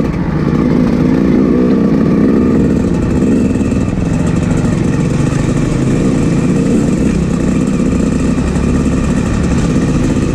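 Dirt bike engine running steadily while riding along a trail.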